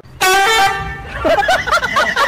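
A short, loud honk like a horn, lasting about half a second, followed about a second in by quick, rising-and-falling laughing voice sounds.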